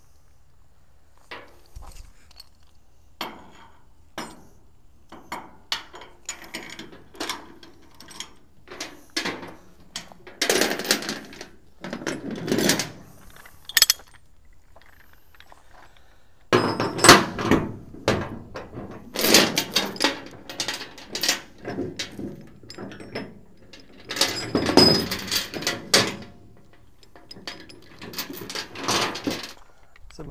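A 5/16-inch grade 70 steel chain rattling and clinking as it is pulled through and hooked up, with irregular metal clanks against the trailer and a ratchet binder. There are louder spells of clattering about ten seconds in and again from about seventeen seconds.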